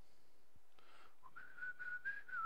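A person whistling softly through the lips: a short note starting about a second in, then a slightly higher note held steady.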